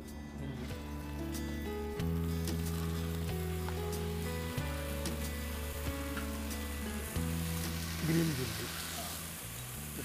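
Food sizzling in hot oil in a large metal pot, stirred with a metal ladle that clicks and scrapes against it. Under it, background music of held low notes that change every two or three seconds.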